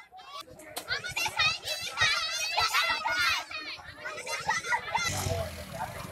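High-pitched voices of schoolgirls in a crowd, speaking and calling out loudly. About five seconds in, this gives way to a lower, mixed crowd noise.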